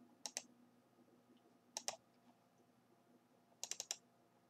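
Computer mouse clicking: a double click about a quarter second in, another just before two seconds, and a quick run of four or five clicks near the end.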